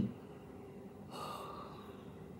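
A woman's short voiced sound right at the start, then a long, soft, breathy exhale about a second in: a sigh of relief, her braids having just come out.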